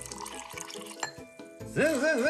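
Water poured from a bowl into a glass jug of mango pieces, faint under steady background music. Near the end a louder wavering pitched sound comes in.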